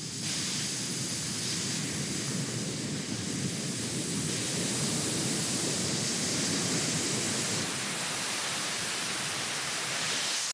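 Steady hiss of air blowing out of a ceiling HVAC supply register.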